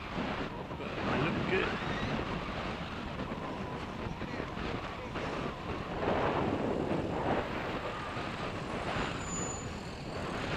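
Wind noise on the microphone and road noise from a bicycle being ridden, with indistinct voices of people along the street.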